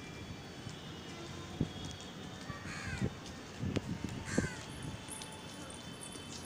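A bird gives two short calls that fall in pitch, about a second and a half apart, over a few light knocks.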